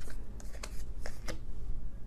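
Tarot cards being handled: about five short clicks and snaps of cards being drawn and set down from the deck.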